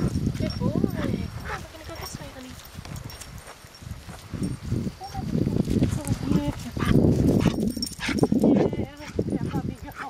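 A dog vocalizing: a short rising-and-falling call about a second in and a high whine near the end, over loud rumbling bursts on the microphone.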